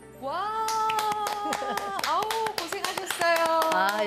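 Two people clapping their hands in quick, uneven claps starting about a second in, over long drawn-out voices and music.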